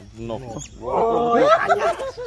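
A man laughing loudly, louder and fuller from about a second in, after a softer vocal sound at the start.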